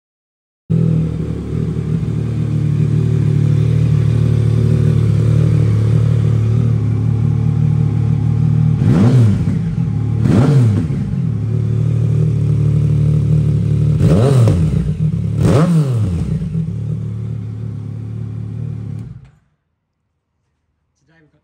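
Yamaha XSR900's 847 cc inline three-cylinder engine idling through an aftermarket Scorpion exhaust, blipped twice in quick succession and then twice more, each rev rising and falling back to idle. The sound cuts off near the end.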